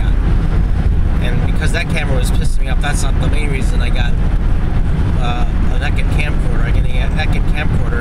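Steady road and engine rumble inside a car cabin at freeway speed, with a voice talking over it.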